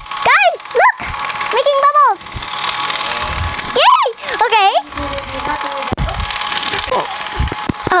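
Battery-powered Disney Frozen bubble machine running, its fan motor giving a steady whir as it blows out bubbles. A child's high-pitched squeals of delight rise and fall over it several times.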